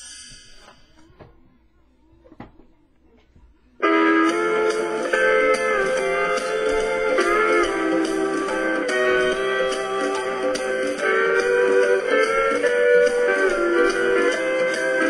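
Hawaiian-style hula guitar music with sliding steel-guitar notes starts suddenly about four seconds in and plays on steadily; before it, only a few faint short sounds.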